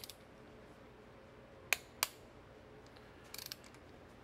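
Click-type torque wrench tightening an intake manifold bolt: two sharp clicks about a second and a half in, a third of a second apart, as it releases at its set torque, then a brief rattle of the ratchet pawl near the end.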